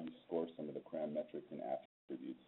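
A man's voice speaking over a narrow, phone-like line, with a brief dropout near the end.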